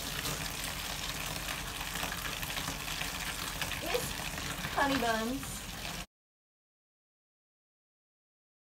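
Bathtub faucet running, a steady rush of water into the tub. It cuts off abruptly about six seconds in, leaving silence.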